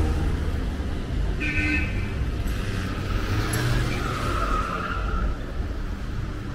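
Car traffic passing through a city intersection, with engine and tyre noise from a car going by close. A short car-horn toot comes about a second and a half in.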